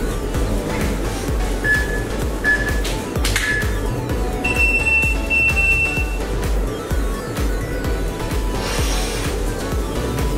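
Background music with a steady low beat and a few short, high held notes near the middle.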